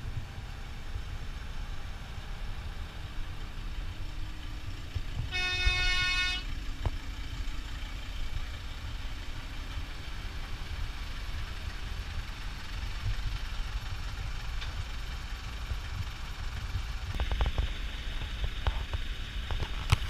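A horn sounds once, a single steady note lasting about a second, over the steady low rumble of a car ferry under way. A louder rush of noise with a few clicks comes near the end.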